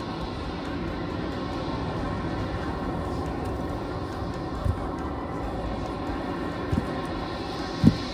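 A low, steady rumbling drone from the stage sound system during a live ambient music set, with faint sustained tones above it. Three soft low thumps come in the second half, the last, just before the end, the loudest.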